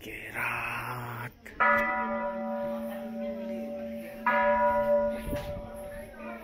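Hindu temple bell struck twice, about two and a half seconds apart. Each strike rings on with a steady, slowly fading tone. A second of rustling noise comes before the first strike.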